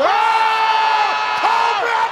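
A rugby commentator's excited drawn-out shout, one high note held for about a second, then a shorter one near the end, over stadium crowd noise.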